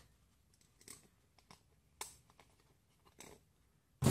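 Faint handling noises, close by: four soft clicks and scrapes as small bolts are handled and pushed through the holes of a small foam box, the sharpest about halfway through.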